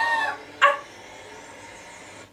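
A woman's strangled cry that rises and falls in pitch, then a short sharp yelp a little over half a second in, followed by a faint steady hiss.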